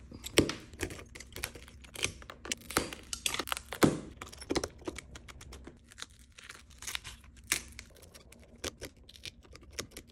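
Shattered back glass of an iPhone 12 Pro, loosened by a laser, being scraped and picked off the phone with a small hand tool: irregular crunching and cracking of glass fragments, several a second.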